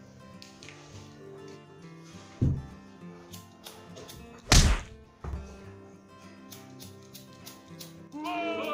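Background music of steady held tones, broken by a few thuds; the loudest comes about halfway through. A run of faint clicks follows it.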